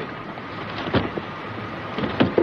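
A car door opening: a short click about a second in, over a steady hiss.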